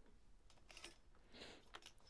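Near silence with a few faint, short clicks of clothes hangers being handled on a metal clothing rack.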